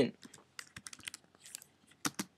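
Typing on a laptop keyboard: a quick, uneven run of light key clicks as a short formula is keyed in.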